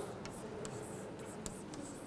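Chalk writing on a blackboard: faint scratching with a scatter of light ticks as the chalk strokes and taps the board.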